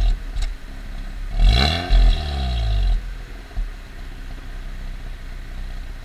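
Mazda RX-8's rotary engine at the tailpipe, idling, then revved once about a second and a half in, its pitch climbing and falling back to idle by about three seconds.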